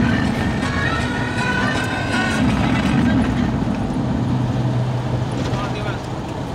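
Steady engine and road noise inside a moving car, with music playing over it, pitched melody lines strongest in the first half.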